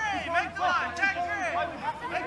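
Several people's voices talking and calling out at once, overlapping.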